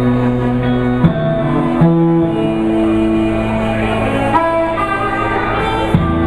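Live blues band playing without vocals, electric guitars and bass holding and changing notes; a sharp accent and chord change come about a second in.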